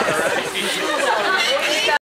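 Chatter of a gathered crowd: several people talking at once, their voices overlapping.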